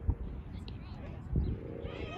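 Faint, distant voices over irregular low rumbling gusts of wind on the microphone.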